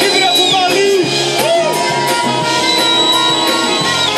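Jazz-funk band playing live: drum kit with steady hi-hat ticks over a pulsing bass line, and long held melody notes that bend down at their ends.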